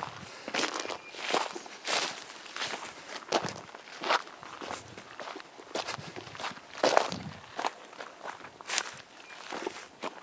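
Footsteps on loose volcanic cinder and grass, an uneven step about every half second to second.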